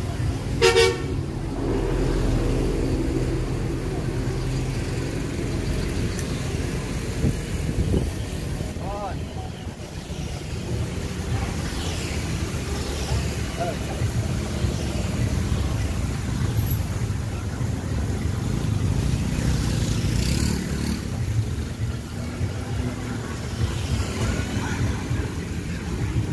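A vehicle horn toots briefly about a second in, over a steady low rumble of street traffic.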